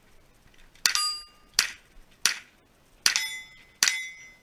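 Five rifle shots fired in fairly quick succession at steel targets. The first, fourth and fifth shots are each followed by a lingering metallic ring from a struck steel plate; the second and third give a sharp crack with no ring.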